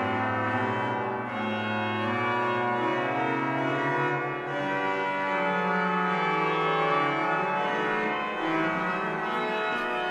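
The Müller pipe organ of St. Bavo Church, Haarlem, playing full sustained chords over slowly stepping bass notes.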